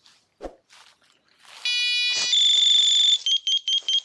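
GADFLY animal-deterrent unit's electronic siren going off. A harsh buzz starts about one and a half seconds in and turns into a loud steady high tone. That breaks into fast, even beeping near the end.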